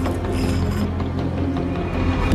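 Low, dark soundtrack music with a steady drone, over which a thin metal chain rattles briefly in the first second as it is scraped up off a tile floor.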